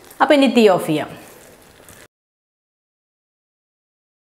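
A voice speaking briefly, then the sound track cuts out to dead silence about two seconds in.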